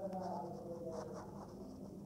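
Scratchy rustling and handling noise, with a faint voice in the first second or so over a steady low hum.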